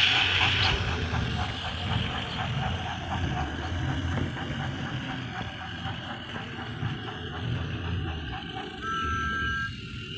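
Battery-powered Thomas Trackmaster toy engine running on plastic track: its motor and gears whirring with a rapid, even clatter of wheels over the track. A brief two-note steady tone sounds near the end.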